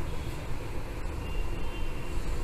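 Steady low rumble with a faint hiss over it and no distinct event.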